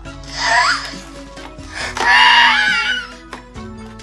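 A toddler's high-pitched squeals over light background music: a short rising-and-falling squeal about half a second in, then a longer, wavering one about two seconds in.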